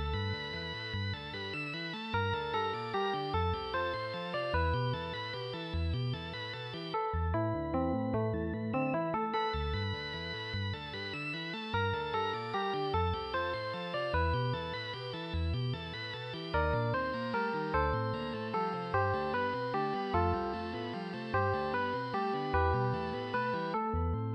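Home-recorded instrumental keyboard music: electric organ and sampled virtual instruments playing a busy melody over a pulsing bass line.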